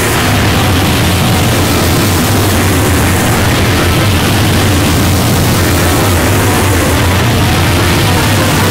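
Harsh noise music: a loud, unbroken wall of dense noise over a heavy, steady low drone.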